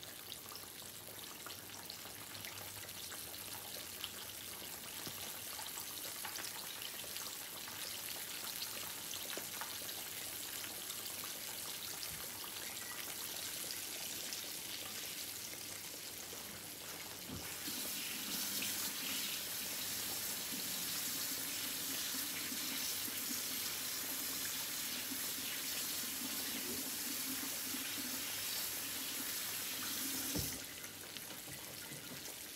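Chicken frying in hot oil in skillets, a steady sizzle. About two-thirds of the way in a louder rush of a kitchen tap running into the sink joins it, and it is shut off with a knock at the very end.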